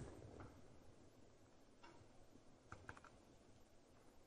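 Near silence: room tone, with a few faint light clicks about two seconds in and again near three seconds.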